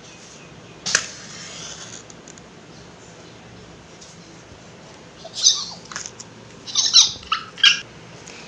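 A safety match struck on a matchbox about a second in: a sharp scrape, then a brief hiss as it flares. In the last three seconds come several louder, short, high-pitched scratchy sounds, some with a squeaky bending pitch.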